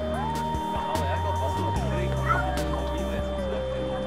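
Music: one long sustained melody note that glides up early, slides back down a little under two seconds in and steps lower near the end, over held bass notes. Crowd chatter runs beneath it.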